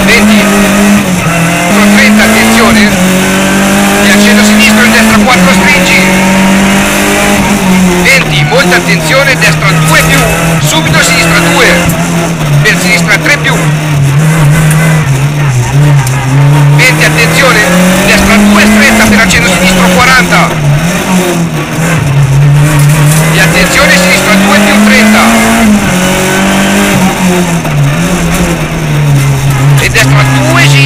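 Rally car engine heard from inside the cabin, running hard on a stage. Its pitch climbs and drops again and again as the car accelerates, shifts gear and brakes for corners.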